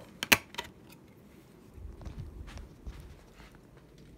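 Handling noise: a few sharp clicks in the first half-second, one of them loud, then faint low bumps and rustling as things are picked up and carried.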